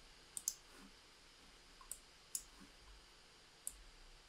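Faint computer mouse button clicks: a quick pair about half a second in, then single clicks at about two seconds, two and a half seconds and near the end.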